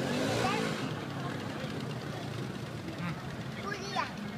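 Spectators talking over the sound of a car engine running, with a louder surge of engine noise in the first second.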